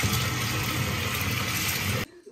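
Tap water pouring in a steady stream into a nearly full, foamy bathtub, with a continuous rushing and splashing.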